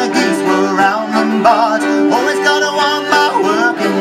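Live acoustic folk band playing: two fiddles, acoustic guitar and button accordion with sustained chords, and a sung verse over them.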